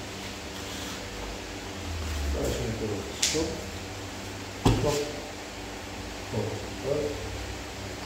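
Two grapplers moving and gripping on foam mats, with one sharp slap about halfway through, the loudest sound here. A man speaks a few short words of instruction in Polish.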